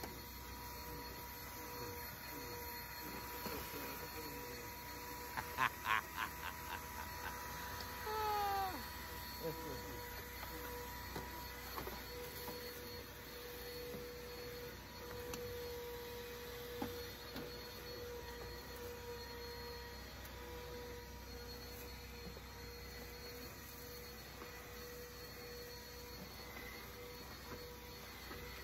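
Vacuum cleaner running steadily with a constant motor whine. A few short voice-like sounds come about six seconds in, and a falling call follows about two seconds later.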